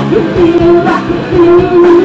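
Live rock band: a woman singing long held notes over electric guitar, electric bass and a drum kit, with drum and cymbal hits.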